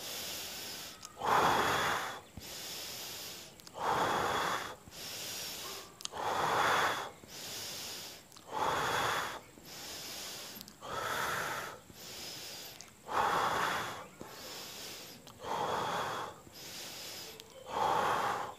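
A man breathing slowly and rhythmically in a yogic breathing exercise: a strong breath out through the mouth about every two and a half seconds, each followed by a softer breath in, eight cycles in all.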